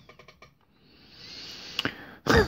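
A man drawing a long breath in between sentences, a soft hiss that swells over about a second, with a short click near the end.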